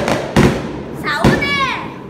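A few loud, sharp impacts, then a girl's high-pitched voice gliding downward for about half a second, starting just over a second in.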